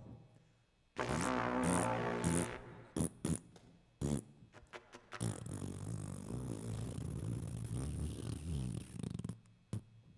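A man making comic mouth sound effects into a cupped microphone: a pitched vocal sound, a few sharp pops about three to four seconds in, then a long low buzzing sound.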